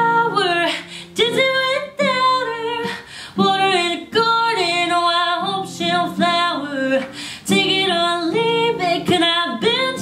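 A woman singing a slow song in phrases with short breaths between them, accompanied by a strummed Yamaha acoustic guitar; her voice is the loudest part.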